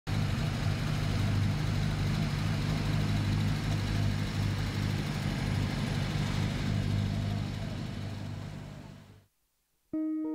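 Car engine running with traffic noise: a steady low hum over a wide hiss. It fades out over the last couple of seconds and stops shortly before the end.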